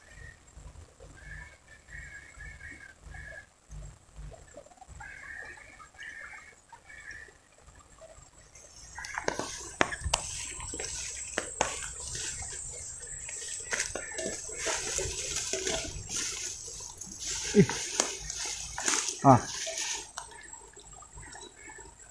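Tall riverbank grass and vegetation rustling and snapping as a person pushes through it, starting about eight seconds in and growing louder toward the end. Faint high chirps come and go before that, and a short falling exclamation of "ah" comes near the end.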